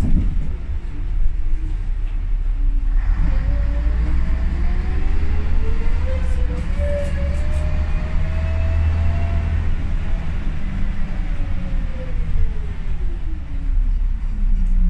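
Ikarus 280 articulated bus heard from inside the passenger cabin while driving: a deep, steady rumble with a howling drivetrain whine from the ZF gearbox and axle. The whine climbs in pitch for several seconds from about three seconds in as the bus gathers speed, then falls away through the last few seconds as it slows.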